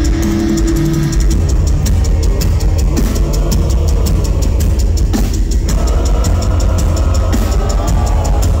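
Heavy metal band playing live, loud and continuous: distorted guitars and bass over drums with rapid, steady cymbal and kick strokes.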